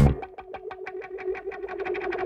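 Electric bass played high on the neck: a quick run of repeated plucked notes, about ten a second, in a fairly high register with no deep bass underneath, through an effect.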